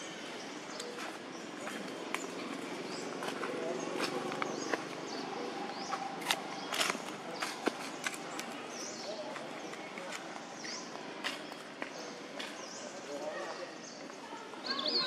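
Outdoor ambience with indistinct voices in the background, short high chirping calls, and a few sharp snaps, loudest about six to eight seconds in.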